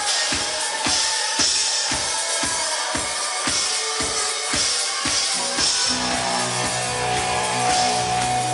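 Live rock band's drum kit playing a steady kick-drum beat, a little over two beats a second, with cymbals over it; about six seconds in, bass and guitars come in with a held chord.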